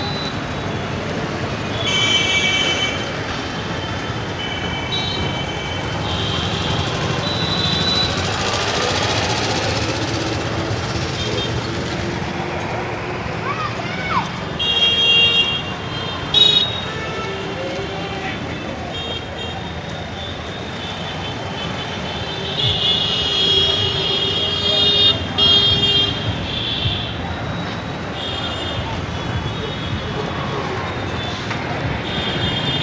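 Busy city street traffic with engines running and repeated vehicle horn honks: several short toots, then a longer run of honking about 23 to 26 seconds in.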